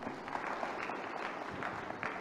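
Audience applauding: many hands clapping in a steady, fairly faint patter.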